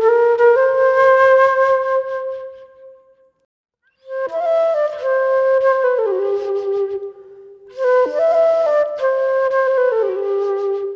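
Unaccompanied silver concert flute playing a slow melody: a long held note that fades out about three seconds in, a moment of silence, then flowing phrases that step downward.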